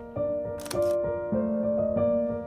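Piano music with a camera shutter click, in two quick parts, a little over half a second in.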